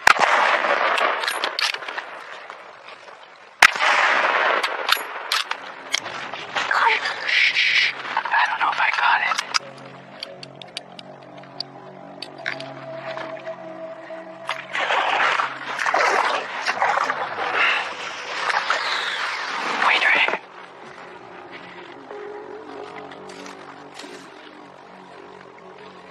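A single rifle shot about three and a half seconds in, from a .375-calibre rifle fired at a black bear. Background music and other noisy sounds run around it.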